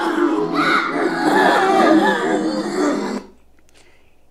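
A looped Halloween sound-effect track of many overlapping voices, played from an MP3 player through a small amplifier and speakers. It cuts off suddenly about three seconds in.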